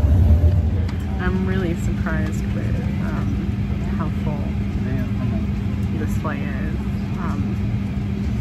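Steady cabin hum and air noise inside an Embraer regional jet, with a low steady tone and indistinct voices nearby. A heavier low rumble in the first second drops away.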